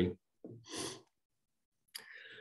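A man's short audible breath about half a second in, lasting about half a second, followed by a pause and a brief mouth click near the end.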